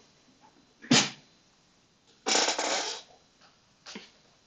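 A man's breath and throat noises close to the microphone: a brief sharp one about a second in, then a longer breathy exhale past the middle.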